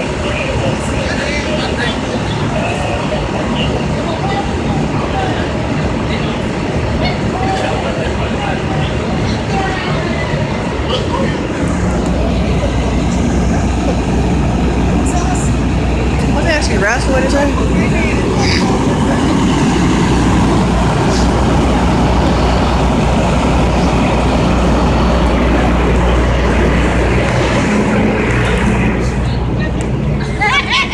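Idling engines of parked emergency vehicles, among them a fire truck beside the camera: a steady low hum that comes in about twelve seconds in and holds, over street traffic and people talking.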